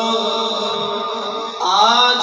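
A man's voice singing a naat into a microphone: he holds a long sustained note, breaks off about a second and a half in, and starts a new phrase that rises in pitch.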